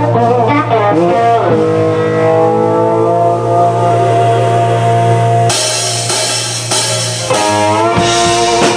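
Live blues band playing, with long held horn and keyboard notes over a steady bass note. About five and a half seconds in, the drums and cymbals come in loudly, and the horns swell upward near the end.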